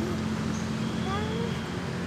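A short wordless call that rises in pitch about half a second in, over a steady low hum.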